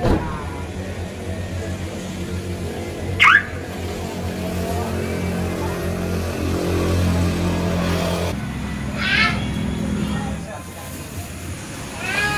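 A car alarm gives one short rising chirp about three seconds in, the loudest sound, over a steady low hum. A second, wavering chirp comes near the nine-second mark.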